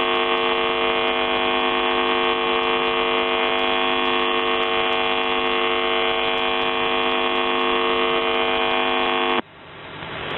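The buzz tone of the Russian military shortwave station UVB-76, 'The Buzzer', on 4625 kHz, heard through a shortwave receiver as a steady buzz. It cuts off suddenly about nine and a half seconds in, leaving receiver static that grows louder.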